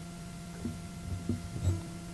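Acoustic guitar being shifted into a new playing position, giving a few faint, soft knocks and handling sounds over a steady low hum.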